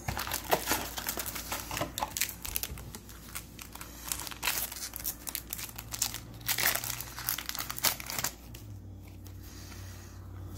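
Foil wrapper of a Yu-Gi-Oh booster pack crinkling and tearing as it is opened by hand, a dense run of crackles that stops about eight seconds in.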